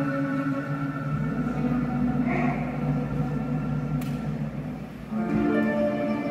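Chinese traditional orchestra playing a slow passage of sustained chords, with a low rumble beneath them. The sound thins out shortly before five seconds in, then a new chord comes in.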